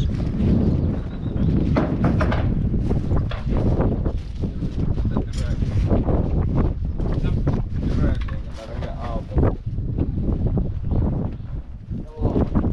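Wind buffeting the microphone in a loud, uneven rumble, with indistinct voices at times.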